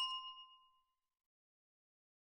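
Ring of a single bell-like chime dying away over about the first second, then dead silence.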